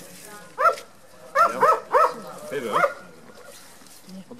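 A dog barking about five times in quick succession, short sharp barks in the first three seconds.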